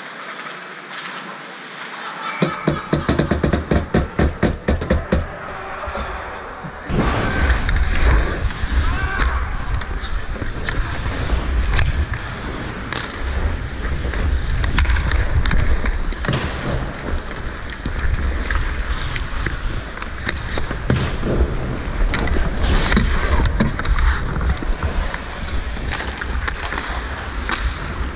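Ice hockey skating heard from a helmet-mounted camera: skate blades scraping and carving the ice over a steady low rumble, with scattered sharp knocks of sticks and puck. A fast run of knocks comes a few seconds in, and the skating noise starts about seven seconds in.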